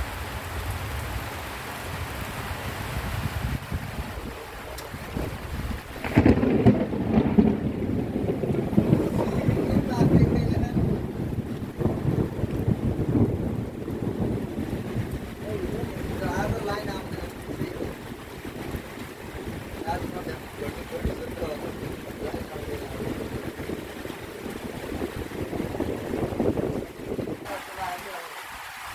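Rain falling in a windstorm: a steady rain hiss, then from about six seconds in, strong gusts of wind buffeting the microphone with loud, uneven low noise that lasts to the end.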